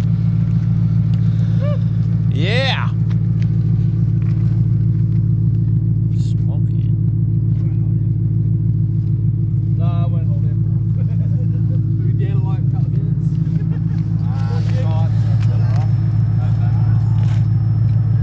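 Holden VY Commodore wagon's LS1 V8 running steadily at a constant speed right after a burnout.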